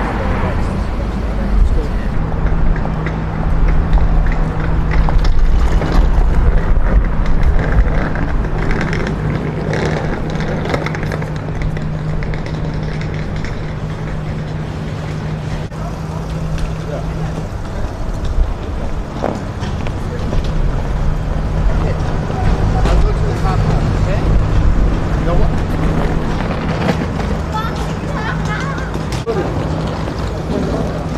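Outdoor street ambience: a steady rumble of road traffic with a low, even hum that breaks off briefly about halfway through, and indistinct voices in the background.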